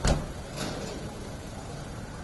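A sharp knock against the body of a van at its sliding doorway, then a lighter knock about half a second later, over steady street noise.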